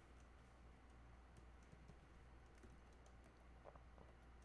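Near silence with faint, irregular clicks of typing on a computer keyboard over a low steady hum.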